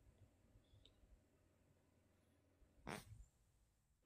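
Near silence: faint room tone, broken once about three seconds in by a short, soft noise.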